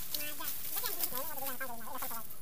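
A run of short, wavering vocal calls, about five in two seconds.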